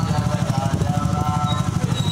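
Motorcycle engine running close by with a rapid low pulsing, with voices from the crowd over it.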